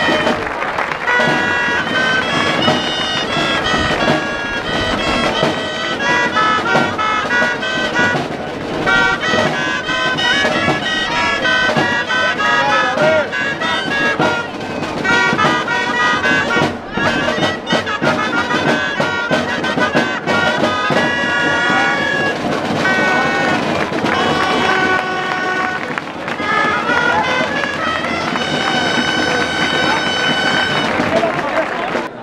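Grallas (Catalan shawms) playing a shrill, reedy melody of quick runs and held notes, the kind of tune that accompanies a human tower as it is raised.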